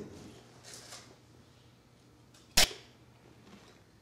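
A single sharp crack about two and a half seconds in, against faint room tone.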